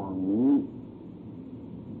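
A monk's voice ends a phrase in Thai about half a second in. A pause follows, filled only by a steady low hum and hiss from the recording.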